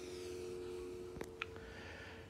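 Faint room tone with a steady low hum and a couple of small clicks a little past the middle, as the phone is swung around.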